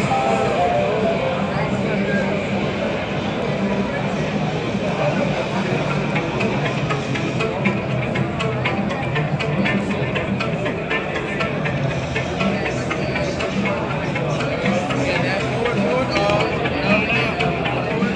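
Busy exhibition-booth ambience: background music with a beat playing over people talking nearby.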